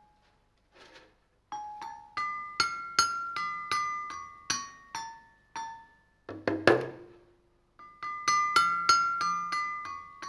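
Struck pitched percussion playing a slow melody of single bright, ringing notes, each fading before the next. About two-thirds of the way through comes one louder, noisier hit, then the notes resume after a brief pause.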